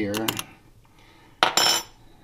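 Metal clinking in a small stainless steel Vietnamese phin coffee filter as its parts are handled: a few light clicks, then a short, loud, ringing metallic clatter about a second and a half in.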